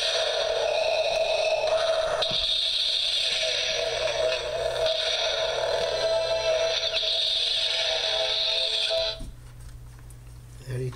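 Star Wars Darth Vader alarm clock radio playing music through its small speaker, the clock's demo mode. The sound cuts off suddenly about nine seconds in.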